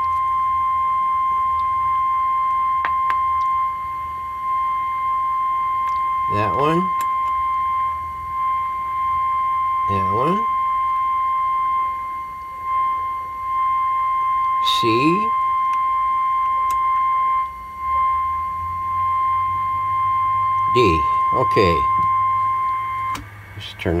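Steady test tone from the Zenith 7S529 radio's speaker, with a low hum under it: the modulated 455 kc signal-generator signal used for IF alignment, here being peaked stage by stage. A few brief falling sweeps break in, and the tone cuts off suddenly near the end.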